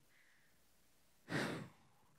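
A man's single short sigh, a breath pushed out into a handheld microphone held at his mouth, about a second and a half in.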